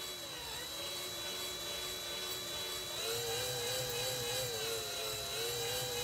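A 20 V cordless drill turning a small wind turbine generator's shaft at low speed with a steady whine. About halfway through the whine steps up in pitch as the drill is sped up, from about 130 toward 200 RPM, and then wavers slightly.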